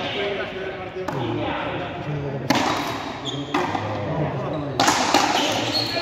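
Frontenis rally: the rubber ball cracking off racquets and the front wall of an indoor fronton, about one hit a second, each echoing in the hall.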